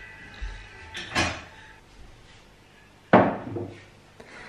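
Kitchen tidying sounds: a short scraping clatter about a second in, then a louder sharp knock with a brief ringing tail about three seconds in, as things are put away on a wooden kitchen shelf. Faint music underneath.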